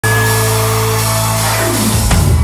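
Live rock band intro: a loud held low note under steady higher tones, with a pitch sweep falling near the end.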